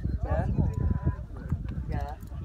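Indistinct voices of people nearby, over a strong, fluctuating low rumble of wind buffeting the microphone.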